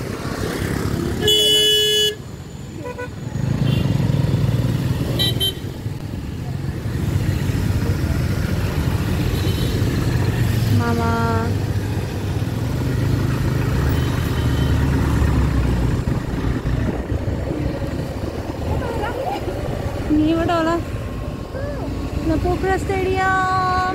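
Busy street traffic: scooter and motorcycle engines running past, with two vehicle horn honks, a higher one about a second in and a lower one about eleven seconds in.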